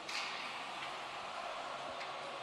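Faint ice-rink ambience: a low, even wash of arena and crowd noise with no distinct events.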